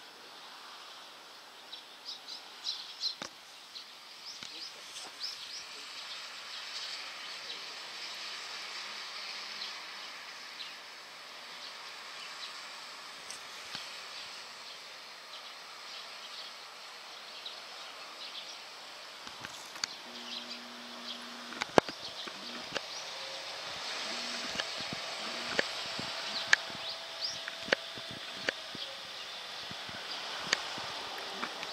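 Outdoor background noise with many short, high chirps like small birds calling. In the second half come a few sharp clicks or knocks, the loudest about two-thirds of the way in, and a brief low hum.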